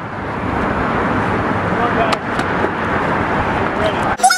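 Steady road traffic noise that builds slightly at first, with faint voices and a couple of sharp clicks in the middle.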